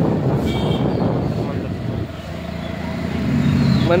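Street traffic and a two-wheeler's engine running as it rides along, a continuous rumble with a low engine hum that grows louder over the last second or two.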